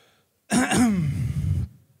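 A man clearing his throat once into a handheld microphone, about half a second in and lasting about a second.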